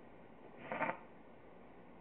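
Quiet room tone with one brief soft sound a little under a second in.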